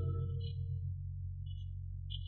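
The tail of an organ music bridge: a held low organ chord fading away, its higher notes dying out within the first second while the low notes linger.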